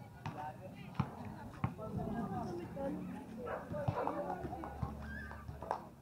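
Street ambience of people's voices talking in the background, broken by a few sharp knocks, with a low steady hum coming in near the end.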